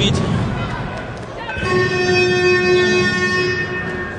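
Basketball arena horn sounding one steady, unchanging tone for about two seconds, starting about a second and a half in, over the murmur of the hall.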